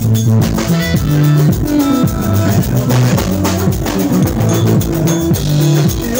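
Loud live band music, instrumental for this stretch: drums keeping a steady beat under a moving bass line and guitar.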